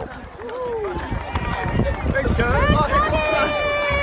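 Crowd of onlookers cheering and shouting as swimmers run past, over a low rumble. A long drawn-out whoop starts about three seconds in.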